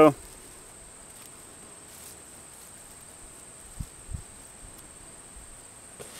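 Steady high-pitched insect trill, typical of crickets in a field, with two soft low thumps about four seconds in.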